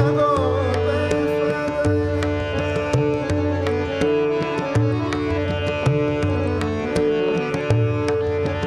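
Natya sangeet accompaniment: tabla playing a steady rhythmic cycle with deep bass strokes that bend in pitch, over held harmonium notes and a tanpura drone. A sung phrase trails off just after the start, leaving the instruments to carry the rest.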